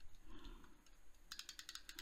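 Tombow permanent adhesive tape runner rolled along a paper planner page, giving a quick run of faint clicks in the second half.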